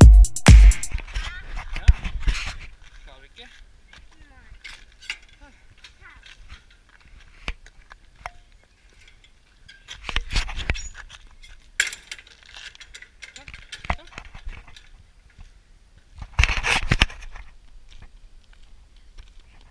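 Dance music with a steady beat that stops about a second in, followed by toddlers' babbling and short calls, loudest near the end, with scattered sharp clicks in between.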